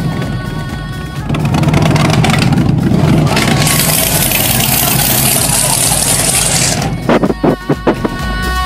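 Supercharged engine of a rat-rod pickup running as it drives slowly past, growing louder about a second in and turning into a loud, harsh rasp from about three and a half to seven seconds, then breaking off in short choppy gaps. Music plays underneath.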